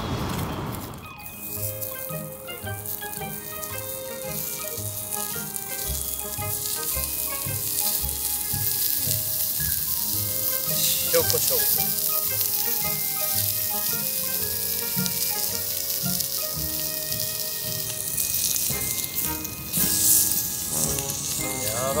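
Sliced pork belly sizzling on a hot iron griddle plate over a gas canister camping stove, a steady frying hiss from about a second in. Background music with held notes and a regular beat plays over it.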